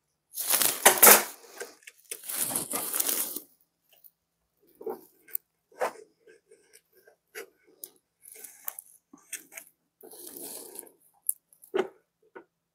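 Thin plastic drink bottle, cut down as a catch cup, crinkling and scraping against a plastic enclosure and loose substrate. There are two longer rustling bursts in the first few seconds, then scattered light clicks and scrapes.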